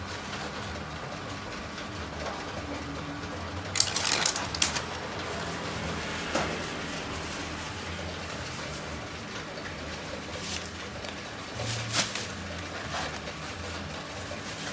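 Handling of a foam takeaway box: a quick cluster of sharp clicks and creaks about four seconds in, then a few single clicks, over a steady low background hum.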